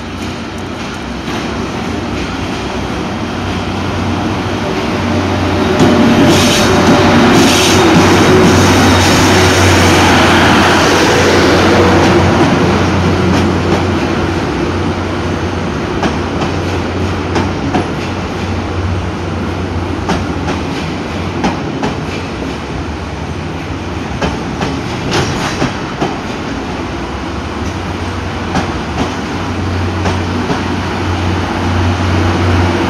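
EF81 electric locomotive hauling a rake of 12-series passenger coaches past at close range. The noise builds and is loudest about six to twelve seconds in as the locomotive goes by. The coaches then roll past with repeated clicks of wheels over rail joints.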